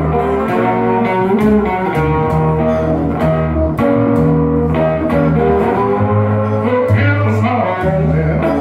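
Live blues played on electric guitar with upright double bass plucking deep notes underneath.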